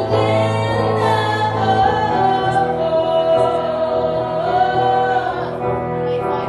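Live rock band: a woman singing long, held notes that bend in pitch, over electric guitar and a steady bass line.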